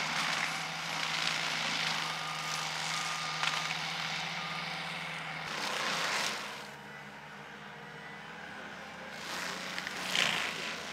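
Bobcat compact track loader with a forestry mulcher head working into juniper: a steady engine and drum hum under broad grinding noise. The sound drops off about six seconds in and builds again near the end.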